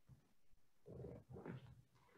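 Near silence: room tone, with a few faint muffled sounds about a second in.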